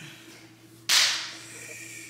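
A single sudden, sharp hiss a little under a second in, fading away over about half a second, over a faint steady hum.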